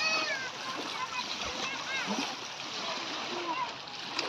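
Sea water splashing around children wading and floating in the shallows, with high children's voices calling out at the start and again about two seconds in.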